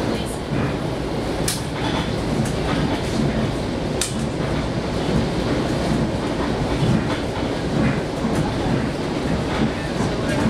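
Long Island Rail Road commuter train in motion, heard from inside a passenger car: a steady running rumble with a few sharp clicks from the wheels on the track, the clearest about a second and a half and four seconds in.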